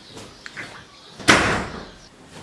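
A door slammed shut once, a loud bang a little past the middle that dies away over about half a second, with a light click shortly before it.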